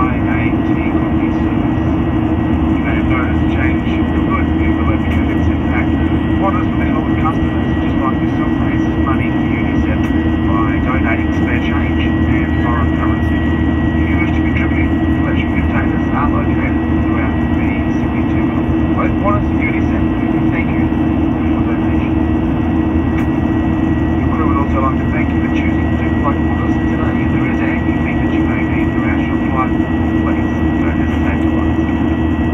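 Steady cabin noise of a Boeing 737-800 in flight, heard from a window seat beside the wing: a constant drone from its CFM56-7B turbofans with a thin high whine held over it. Indistinct voices come and go over the drone.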